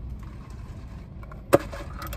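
Low steady hum inside a car, then about one and a half seconds in a single sharp plastic click as a straw is pushed into an iced drink's plastic cup lid.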